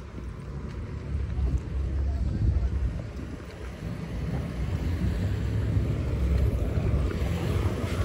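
Wind buffeting the phone's microphone: a low, uneven rumble that swells and eases.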